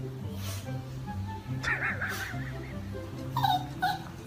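Small poodle puppy whimpering: a wavering high cry about halfway through and a short falling cry near the end, over background music with a steady repeating bass line.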